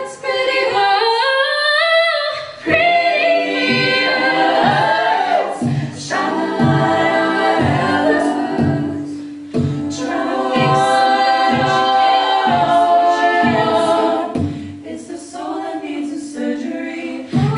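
All-female a cappella group singing layered harmonies, with a solo voice gliding above them. A beatboxed vocal percussion part keeps a steady beat underneath.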